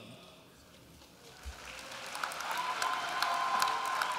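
Audience applause that starts about a second and a half in and builds, with scattered individual claps and one person holding a long cheer over it.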